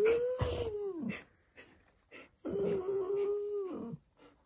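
Alaskan Malamute making two long whining calls, the first rising then falling away, the second held level and then dropping at the end.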